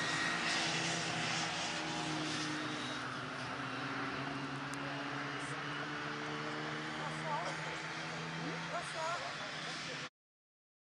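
Classic Mini race cars' four-cylinder A-series engines running as a pack of cars passes on the circuit: a steady, multi-note engine drone whose pitches shift slowly.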